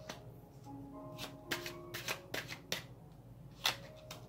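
Oracle cards being handled on a table: a string of about eight short, crisp card snaps and slides, the sharpest near the end, over soft background music with sustained notes.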